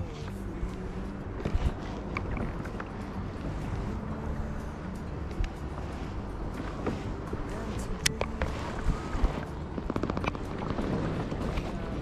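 Water lapping against a kayak hull with light wind, with scattered sharp clicks and knocks of fishing rod and reel being handled, most of them a little past the middle.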